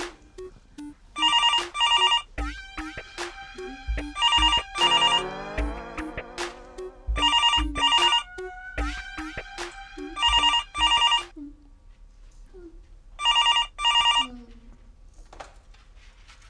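Landline telephone ringing in double rings, five ring-rings about three seconds apart, stopping shortly before the receiver is picked up. Comic background music with a steady plucked beat and a falling slide plays under the ringing.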